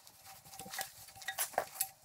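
Brass quick-connect coupler adapter being threaded on by hand, the metal fittings giving a few light clicks and scrapes, most of them from about a second in to near the end.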